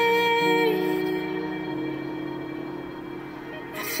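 A pop song playing on the radio: a singer's held note on "bird" ends under a second in, leaving sustained instrumental chords that fade a little before the voice comes back in at the very end.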